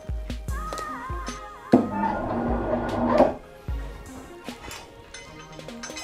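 Background music with held tones and a gliding melody line, swelling louder for a second or two in the middle.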